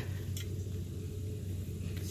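A steady low background hum, with one faint click about half a second in.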